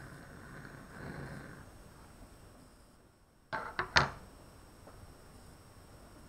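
Metal tongs set down on a heatproof mat: a quick run of three sharp clicks and a clunk about three and a half seconds in, after a faint hiss at first.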